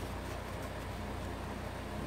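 Steady low background hum and hiss in a room, with no distinct sound standing out.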